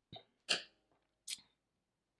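A person's short breath and mouth noises close to the microphone: three brief sounds, the loudest about half a second in and the last a thin, hissy one.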